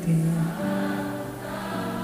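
A group of voices singing a slow worship song together, holding long notes.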